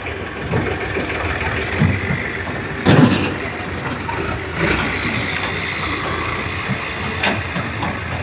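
Tractor diesel engine running steadily while its hydraulic tipping trailer dumps soil. A loud thump comes about three seconds in, and a few lighter knocks follow.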